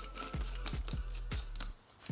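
Plastic blade base being screwed onto a filled personal blender cup: a string of light clicks and ticks from the threads as it is twisted shut, over faint background music.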